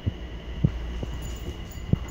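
A few soft, irregular low thuds of bare feet stepping on a tile floor, over a steady low hum.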